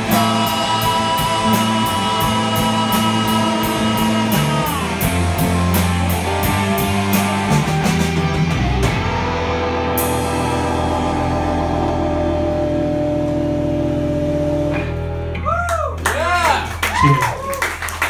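Live rock band of electric guitars, bass guitar and drums playing the close of a song. Held chords ring over steady drumming until the drums stop about halfway through, with a single cymbal crash as a low chord rings on. Near the end comes a closing flourish of bending guitar notes and drum hits.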